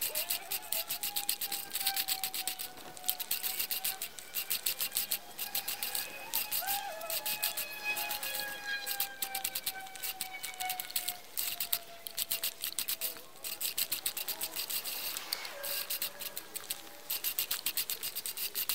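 Great States 14-inch four-blade push reel mower pushed back and forth through grass: a fast, uneven clatter of clicks from the spinning reel and blades, with a faint tone that drifts slowly in pitch.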